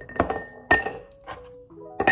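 Ice cubes dropped by hand into a glass tumbler, clinking sharply against the glass a few times.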